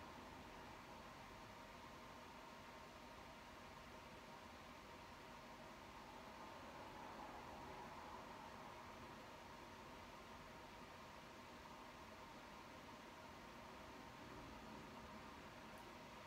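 Near silence: steady room tone with a faint even hiss.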